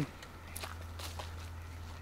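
Footsteps walking outdoors: a few soft, irregular steps over a low steady hum.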